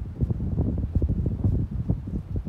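Wind buffeting the microphone: an irregular low rumble that rises and falls in quick gusts.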